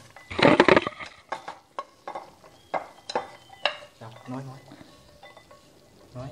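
A metal utensil clinking and scraping against a nonstick frying pan while stirring a batch of roasted peanuts. A dense clatter comes about half a second in, followed by scattered single clicks.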